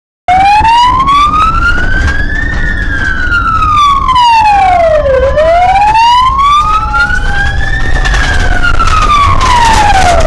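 Police car siren wailing in slow rises and falls, about one cycle every five seconds, over a steady low rumble of engine and road noise. It cuts in abruptly just after the start, and a fainter second tone glides slowly down beneath the main wail.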